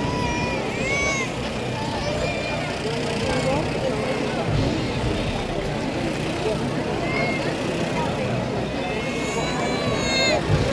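Street crowd chatter over a steady low rumble, with a few higher voices or calls rising above it.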